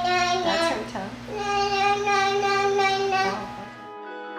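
A baby vocalizing in drawn-out sing-song notes, one of them held steady for about two seconds, over the low steady hum of a bedroom fan and sound machine.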